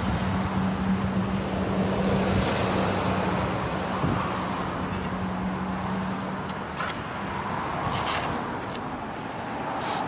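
A steady motor hum over outdoor noise that fades out about seven seconds in, with a few light clicks near the end.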